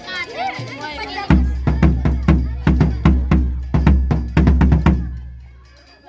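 Marching bass drum struck with a felt mallet in a quick rhythmic pattern, about a dozen deep, booming beats over some four seconds, the ringing dying away near the end. Voices are heard briefly before the drumming starts.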